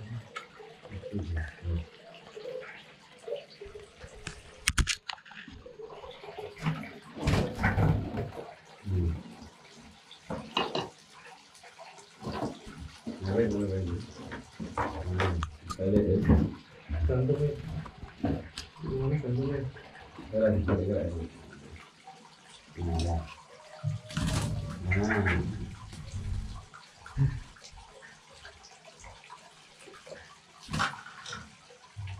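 Low, indistinct speech in short bursts, with intermittent sharp knocks and rattles of a wire bird cage being handled.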